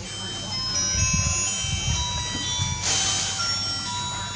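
Ringing chime-like tones: many clear, high notes struck one after another and overlapping as they ring on, with a brighter cluster about three seconds in, over a low rumble of thuds.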